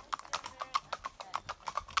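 Hooves of two horses walking on a paved lane, clip-clopping in an uneven, overlapping rhythm of about six or seven hoofbeats a second.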